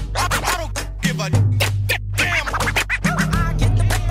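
Hip hop track in an instrumental stretch between rapped verses: a heavy bassline changing note about once a second under a drum beat, with turntable scratching over it.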